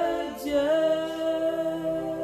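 A woman singing long held notes, breaking off and sliding up into a new sustained note about half a second in, over soft sustained background music.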